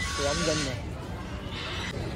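A person's voice briefly in the first half-second, with soft breathy hiss.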